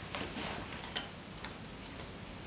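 Several light clicks and ticks, the sharpest about a second in with a brief high ring, over soft rubbing of hands on a dog's coat.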